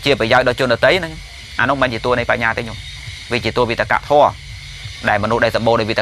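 A man's voice giving a Buddhist sermon in Khmer, speaking in short phrases with brief pauses, over a faint steady hiss.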